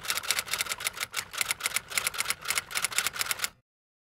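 Pen scratching across paper in quick short strokes, several a second, as a small drawing is sketched. The sound cuts off suddenly near the end.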